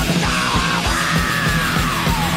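Heavy metal song: dense, fast drumming under a yelled vocal that holds one long note, sliding down in pitch.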